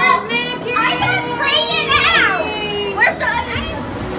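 Excited children's high-pitched shrieks and squeals, with one long squeal rising and falling about halfway through, over steady background music.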